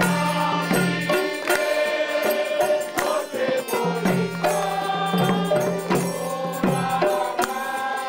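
A group of voices singing a Bengali Christian kirtan, a devotional song, while hand cymbals (kartal) and other percussion keep a steady beat.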